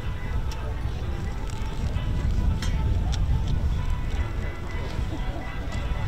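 Wind buffeting the microphone with an uneven low rumble, while a small cloth flag flaps in the gusts, giving irregular light snaps.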